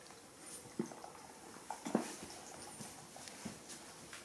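A baby monkey's few short, soft calls, the loudest about two seconds in, with light rustling of pillows and bedding.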